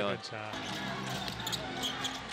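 Live basketball game sound in an arena: a ball bouncing on the hardwood court over a steady crowd murmur.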